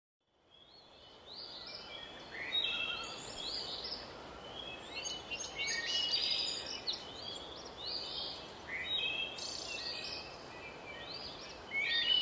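Birds chirping, a busy string of short, high calls over a faint steady outdoor hiss, starting after a moment of silence.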